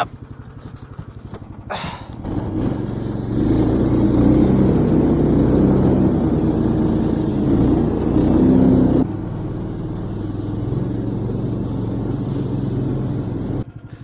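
A motorized snow tow-dog's (motobuksirovshchik's) 15 hp engine idles with a regular beat, then revs up and runs loudly under load as the machine pulls away through snow. About nine seconds in, the sound drops abruptly to a quieter, steady engine note.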